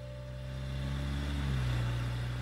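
A car driving past on a road, its low engine hum growing louder and then fading as it goes by.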